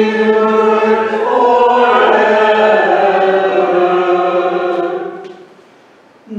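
Congregation singing a hymn or liturgical chant in held notes; the phrase ends and fades out near the end.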